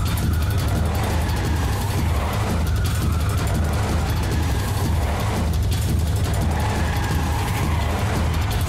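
Steady low rumble of a car driving on the road, with background music over it.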